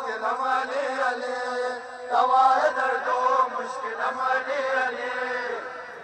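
A voice chanting a noha, a Muharram lament to Ali, in repeated melodic phrases of a second or two each, fading near the end.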